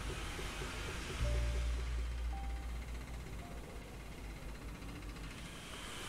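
Quiet background music: a low, steady drone with a few short, soft, high notes over it.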